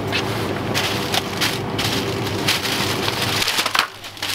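Paper baguette bags rustling and crinkling as baguettes are handled and dropped into a plastic shopping basket. A steady low hum runs under it and stops shortly before the end.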